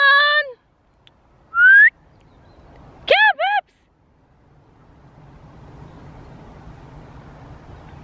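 A woman calling for a runaway dog outdoors: a long high call, a single rising whistle through pursed lips just before two seconds in, then two short high calls at about three seconds. A low steady rush of noise slowly grows through the rest.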